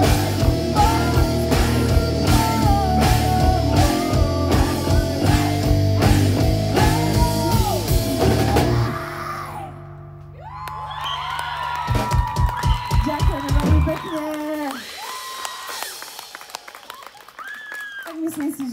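Live rock band with electric guitars, bass, drum kit and a woman singing, playing out the end of a song. A steady beat runs until about halfway, drops away briefly, then comes back for a closing passage of rapid drum hits and held guitar notes that stops about three-quarters of the way through and rings out.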